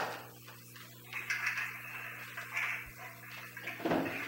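Papers being handled at a meeting table: a sharp knock at the start and another near the end, with a stretch of soft rustling between them.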